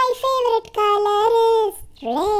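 A child's voice singing two long held notes, the second longer and a little lower than the first.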